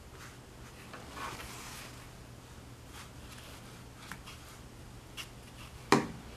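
Flat watercolour brush stroking across wet paper with a soft scratchy rustle, followed by a few light clicks and a single sharp knock near the end. A faint steady low hum runs underneath.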